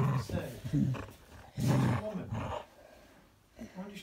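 A dog growling in play over a knotted rope toy, in three short bouts within the first two seconds.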